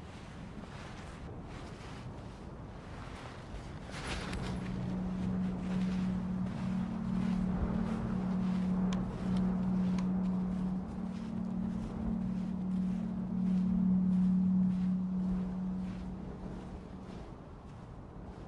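Footsteps crunching through snow in a quick even rhythm. A steady low drone comes in about four seconds in, is the loudest sound, and fades away near the end.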